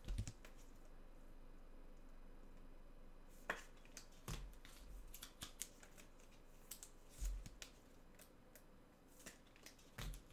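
Scattered light clicks and taps from hands handling things at a desk, with a few soft low thumps, starting about three and a half seconds in after a quiet stretch.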